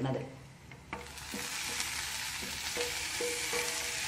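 Sliced onions and fried vegetable pieces sizzling in hot oil in a non-stick pan. The sizzle starts suddenly with a click about a second in and then runs steadily.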